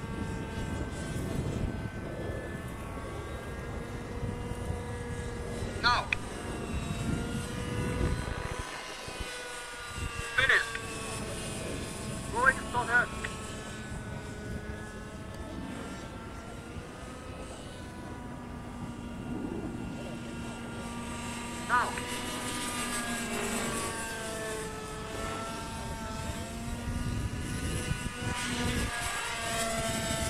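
Radio-controlled model helicopter's small glow engine and rotors running in flight, the pitch slowly rising and falling as it manoeuvres. A few brief, sharp, high-pitched sounds stand out above it.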